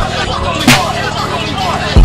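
Break in a hip hop beat: the 808 bass and kick drop out for about two seconds, leaving a voice-like sample over a low hum, with one sharp hit about two-thirds of a second in. The heavy bass comes back right at the end.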